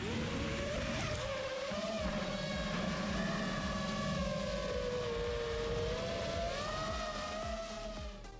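Small electric RC airplane's motor and propeller whining, the pitch rising sharply as it throttles up for takeoff, then holding steady, dipping a little and rising again as the throttle changes in the climb.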